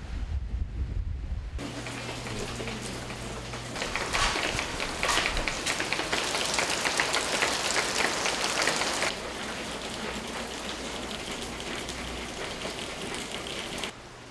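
Rain falling and dripping off a torn awning, a dense patter of drops that is heaviest for a few seconds in the middle and lighter near the end. It is preceded by about a second and a half of low rumble from a car driving on a wet street.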